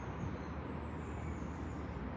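Steady low rumble and hiss of background noise, unchanging throughout.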